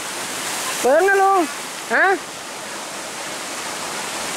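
Shallow stream running over rocks: a steady hiss of flowing water, with a man's voice calling out briefly twice about one and two seconds in.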